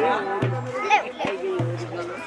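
Mixed voices, children's among them, talking and calling over a steady low musical tone that sounds twice.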